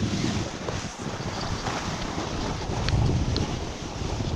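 Wind rushing and buffeting over the camera's microphone during a downhill ski run, mixed with the hiss and scrape of skis on snow. The low rumble swells and dips as speed changes.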